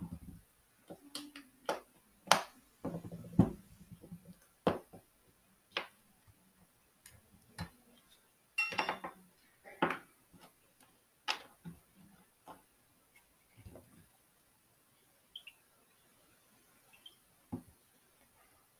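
Scattered small clicks and taps at irregular intervals, about a dozen, the loudest in the first few seconds and again around nine to ten seconds in. These are small sounds made deliberately into the microphone during a background-noise recording.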